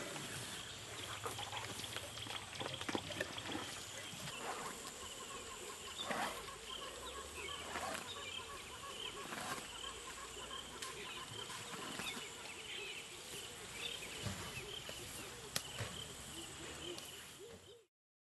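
Outdoor wildlife ambience: many small bird-like chirping calls over a steady high drone, with scattered short clicks and knocks, fading out at the very end.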